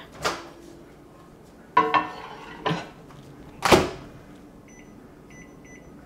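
Microwave oven being worked: several short clunks of its door and handling, then a faint steady hum as it runs, with faint short high tones near the end.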